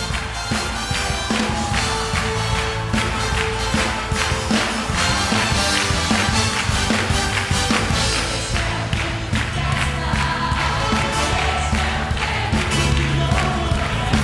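Live band music with a drum kit and cymbals keeping a steady beat and a trumpet section playing.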